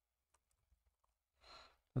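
Near silence with a few faint, short clicks, then a person's audible in-breath about a second and a half in, just before speech begins.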